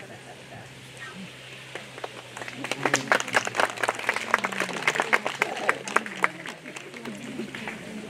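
Audience clapping, starting about two and a half seconds in and dying away about four seconds later, as the band is introduced.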